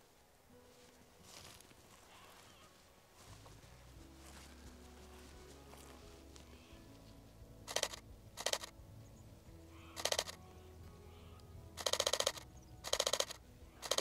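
A camera shutter firing in about six short bursts of rapid clicks from about eight seconds in: continuous high-speed shooting on a Canon R7. Soft background music with low held notes comes in a few seconds in.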